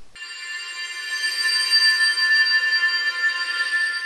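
Added electronic sound effect: a held, shimmering chord of many high ringing tones that swells in over the first second or two, holds steady, and stops just after the end.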